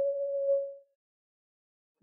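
A steady, single-pitch electronic beep, a sound effect laid over the drama, that fades out a little under a second in.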